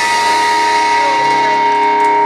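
Live electric guitars and bass holding one chord, ringing steadily without new strums; a lower note joins about a second in.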